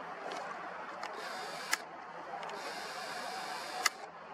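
A camera's zoom motor whirring in two short runs, each ending in a sharp click, with a few small ticks between, as the lens zooms in.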